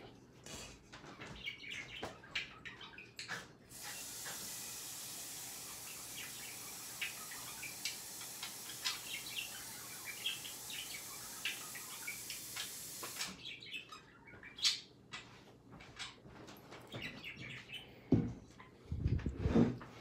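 A tap running steadily for about ten seconds, filling a stainless steel mixing bowl with water. It is followed by scattered knocks and a low thump near the end as the filled bowl is handled and set down.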